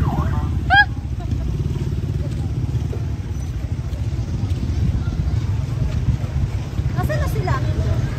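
Outdoor street ambience: a steady low rumble, with short bursts of passers-by's voices about a second in and again near the end.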